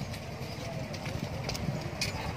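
Many walking sticks tapping on a paved road amid the footsteps of a group walking, irregular hard taps over a low rumble.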